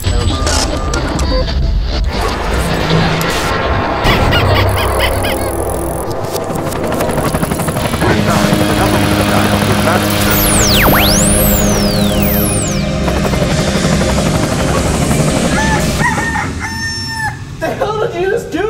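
Rooster crowing layered with loud music and sound effects, including whistling glides in pitch that fall and rise about ten to twelve seconds in.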